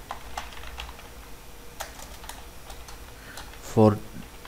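Typing on a computer keyboard: a run of irregular, separate keystrokes as an email address and a new line of text are entered.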